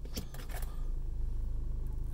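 A few sharp plastic-and-metal clicks as an Audi automatic gear selector, topped with a loose-fitting Black Forest Industries shift knob, is moved out of park into drive; they come within the first half second or so. A steady low hum runs underneath.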